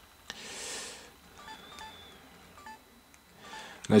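LG Viewty (KU990) touchscreen phone giving short, faint key-feedback beeps as photo thumbnails are tapped and ticked, about five beeps over a second and a half. A tap and a brief soft breath-like hiss come just before them.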